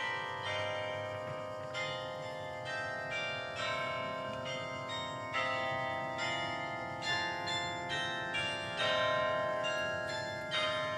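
Bells ringing: a run of struck tones, several strikes a second, each ringing on and overlapping the next.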